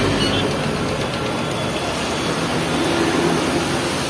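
Hot oil sizzling and bubbling steadily as chicken pieces deep-fry in a large kadai, with a low hum of street traffic underneath.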